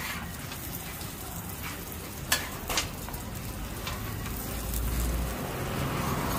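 Egg and bread frying on a flat-top steel griddle, a steady sizzling hiss, with two sharp clicks of the metal spatula against the griddle about two and a half seconds in. A low rumble builds near the end.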